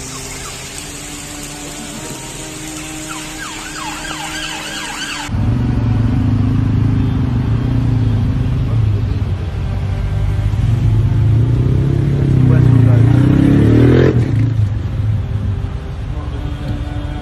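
Flood footage from a street: a steady hiss of rushing water and rain, then a sudden switch to the louder, low rumble of motor vehicles. The rumble swells and rises in pitch near the end, as an engine revs, before dropping back.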